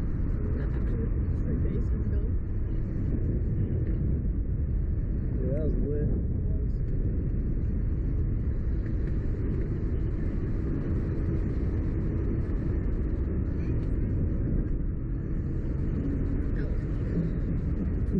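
Steady low rushing of wind over the microphone of a camera mounted on a swinging slingshot ride capsule, with a brief faint vocal sound about six seconds in.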